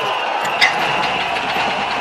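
A motor vehicle's engine running steadily at idle, as the sound for a small truck carrying a load in its front bucket. A low throb comes in about half a second in.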